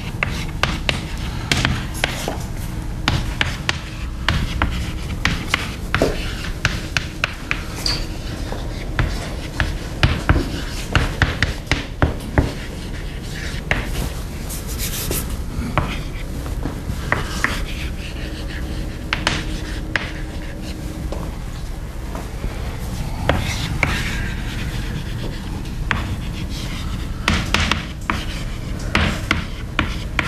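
Chalk writing on a chalkboard: irregular taps and short scratches as each letter is stroked out, over a steady low room hum.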